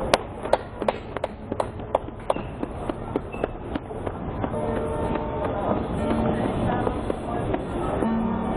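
Acoustic guitar: sharp percussive clicks in an even rhythm of about three a second, then picked notes ringing out from about halfway.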